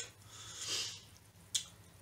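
A person's soft breath, then a single short click about one and a half seconds in.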